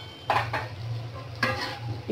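A flat spatula stirring and scraping chunks of pumpkin and onion around an aluminium karai, two strokes about a second apart, with the food frying faintly.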